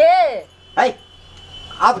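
A woman's high-pitched cry about half a second long, rising then falling in pitch, followed by two short loud exclamations.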